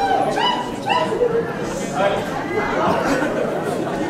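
Speech: people talking over one another in a large hall, with several short high-pitched voice calls in the first second or so.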